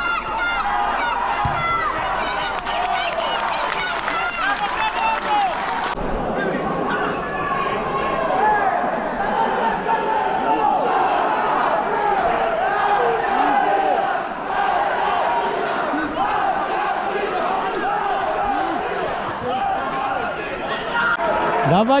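Many voices shouting and calling at once, as rugby spectators and players do during play, with no single speaker standing out. The sound changes abruptly about six seconds in.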